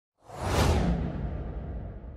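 A whoosh sound effect: it swells in suddenly about a quarter second in, peaks, then slowly fades, with a low rumble beneath.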